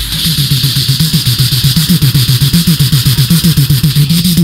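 Human beatboxing: a fast, evenly pulsing low buzzing bass pattern with a hissy top, close enough to a running motor to pass for an engine.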